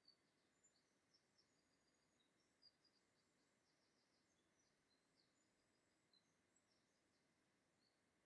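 Near silence: room tone with faint, high, quick chirps of a small bird scattered through it.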